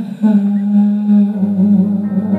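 Live ballad: a male singer holds one long, low final note at the end of a falling vocal line. A lower sustained note comes in under it a little over a second in.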